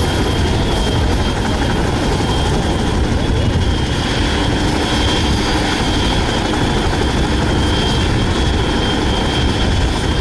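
HH-46E Sea Knight tandem-rotor helicopter running on the ground just after start-up, its twin turboshaft engines giving a steady high whine over the noise of both rotors turning.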